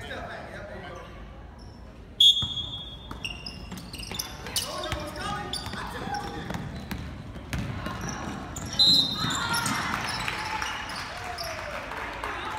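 A referee's whistle blows twice in a gymnasium: a blast of about a second two seconds in and a shorter one about nine seconds in. Between them a basketball is dribbled on the hardwood floor with sharp bounces, and spectators' voices echo throughout.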